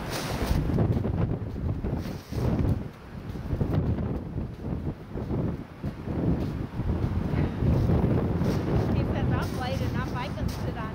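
Wind buffeting the microphone: a gusting low rumble that rises and falls, dipping briefly a few times.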